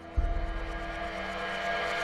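Dramatic tension score: a deep boom hits just after the start, and a dense, rushing drone swells over sustained tones.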